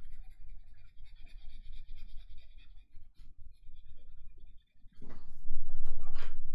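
A graphite pencil scratching across sketchbook paper in short, repeated drawing strokes. Near the end a louder rustling noise rises.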